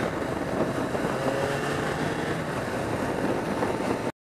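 1987 Suzuki GSX-R750's oil-cooled inline-four engine running at a steady cruising speed, its note only easing slightly, recorded onboard over a constant rush of wind and road noise.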